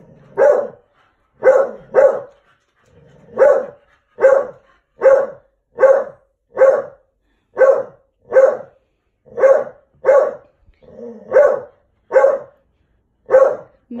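A dog barking over and over, about fifteen loud single barks at roughly one a second. He is barking in protest because he doesn't want the woman petting the other dog.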